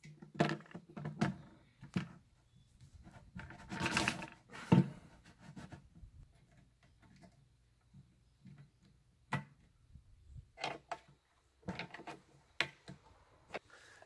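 Handling noise from reassembling a manual knapsack sprayer's pump: irregular clicks, knocks and short rubbing sounds as the pump cylinder, with its new packing, is pushed back into its socket and the pin is fitted.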